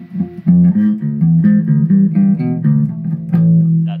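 Electric bass guitar played loud through a Big Muff distortion pedal and amp: a quick run of notes starting about half a second in, ending on a held note that dies away near the end.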